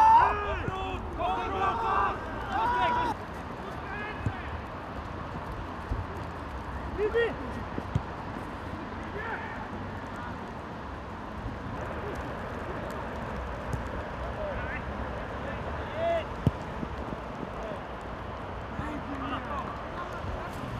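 Footballers shouting to each other on an outdoor pitch, loudest in the first three seconds, then scattered short calls over a steady background hiss. A couple of sharp knocks of the ball being kicked can be heard.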